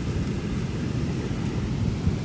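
Low, steady rumble of wind buffeting the phone's microphone.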